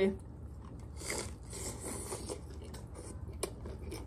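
Close-up chewing of a mouthful of tostada topped with shrimp aguachile: faint crunching and wet mouth noises, with a few small clicks near the end.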